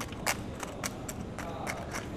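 A metal spoon and fork clinking and scraping against a stainless steel plate: a handful of light, separate clinks.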